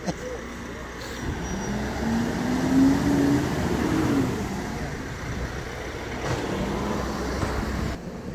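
A road vehicle accelerating past over steady traffic noise. Its engine note rises for about three seconds, then drops away.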